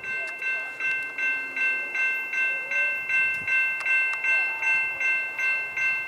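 Railroad grade-crossing bell ringing in a steady, even rhythm of about two and a half strokes a second, each stroke a bright three-tone ring that decays before the next, warning of an approaching train.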